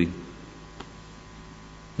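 A pause in speech filled by a steady electrical mains hum from the microphone and amplifier chain, with one faint click a little under a second in.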